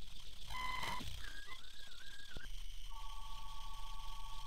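Electronic sound design: a short buzzy glitch about half a second in, then a wavering whistle-like tone, and a steady beeping tone that returns near the end, over a low pulsing hum.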